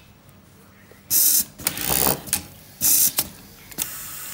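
Automatic glove label-sewing machine starting its cycle about a second in: three short, loud bursts of air hiss from its pneumatic actuators, with sharp clacks in between.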